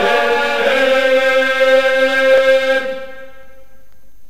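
Georgian Gurian folk choir singing a cappella in several voices, holding the song's final chord on a vowel. Most voices drop away about three seconds in, leaving a quieter held note as the song ends.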